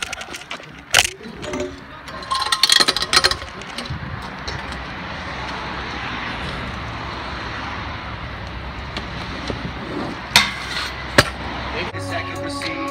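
Knocks and clattering as a camera is handled and set down low on the asphalt, then a steady rushing street noise with two sharp clicks near the end.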